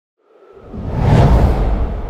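Whoosh transition sound effect under an animated title: a deep rushing swell with a heavy low rumble that builds from about half a second in, peaks near the middle and starts to fade.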